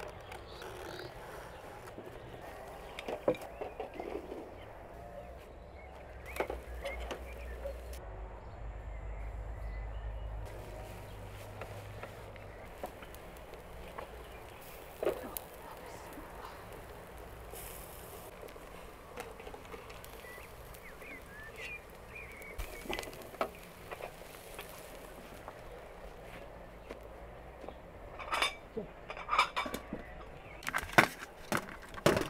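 A few sharp clinks and knocks of a metal baking tray and utensils being handled over a quiet outdoor background, with a low rumble partway through.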